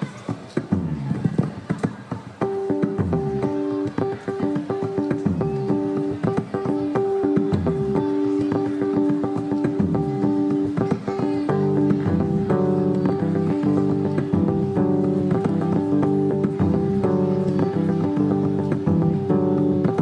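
Solo electric bass guitar played live in a song's instrumental intro: sharp plucked notes at first, then held high notes ringing over a repeating bass line. The line grows fuller and busier about halfway through.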